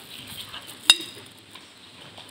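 A single sharp clink with a brief high ring about a second in, over faint outdoor background.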